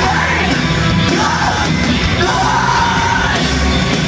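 Hardcore band playing live at full volume: distorted electric guitars, bass and drums, with the vocalist yelling and singing into the microphone.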